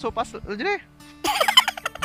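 Domestic fowl calling in two rapid warbling bursts, the second and louder one starting just over a second in, over steady background music.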